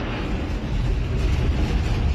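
Low, steady rumble of a large chemical fire as a fireball rises from it. There is no separate sharp blast.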